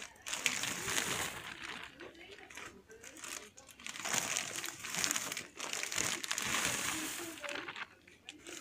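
Plastic bags of mini marshmallows crinkling in irregular bursts as they are shaken out into a plastic bowl.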